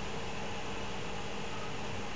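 Steady hiss with a faint, even hum underneath: the background noise of a recording microphone, with no other sound.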